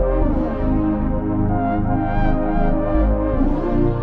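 Brassy Moog Matriarch synth lead playing a loose, unquantized solo melody with reverb and delay, over a low bass synth. The lead slides in pitch near the start and again near the end.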